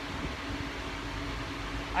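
Steady low mechanical hum with a faint, even drone and no breaks.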